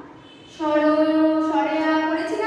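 A woman's voice drawing out a word in one long, nearly level held syllable, starting about half a second in, with a small step in pitch partway through: slow, sing-song dictation rather than a song.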